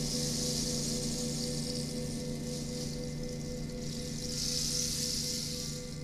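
A rainstick tilted so its pebbles cascade through the tube, a rushing, rain-like patter that swells twice and stops near the end. Under it the low ringing of a gong and singing bowls lingers.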